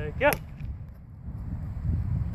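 A short shouted "Yeah, go!" with a sharp snap at its end, then a steady low rumble of wind on the microphone.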